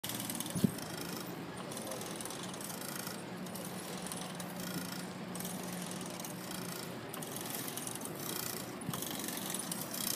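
Bicycle being ridden over pavement: a steady rolling noise from the tyres and drivetrain, with one sharp click about half a second in.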